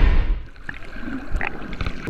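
A loud rushing whoosh that fades away in the first half second, followed by quieter gurgling, bubbling water with a few faint clicks.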